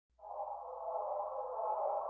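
Opening of a tech-house track: a steady, filtered synthesizer wash confined to the midrange. It comes in quickly a fraction of a second in, with no beat yet.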